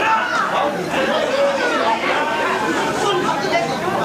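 Crowd of football spectators talking and calling out at once: many overlapping voices, steady throughout.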